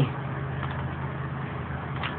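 A steady low hum with a faint even hiss over it: continuous background noise, with no distinct events.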